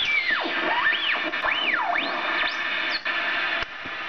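Synthesized intro music from a computer's speakers: whistling tones that swoop up and down over and over above a hiss, dropping quieter near the end.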